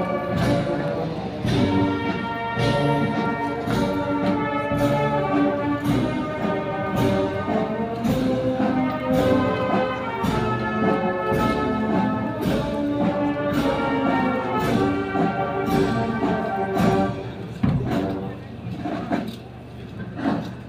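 Brass band playing a slow processional march, sustained brass chords over a regular drum beat. The music dies down about seventeen seconds in.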